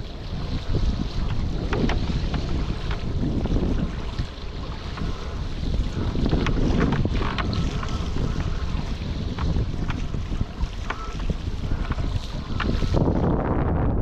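Strong wind (around 25 knots) buffeting an action camera's microphone, over a rush of water and spray from a foil board crossing choppy water, with scattered sharp ticks. About a second before the end the hiss dulls and the low rumble of the wind grows louder.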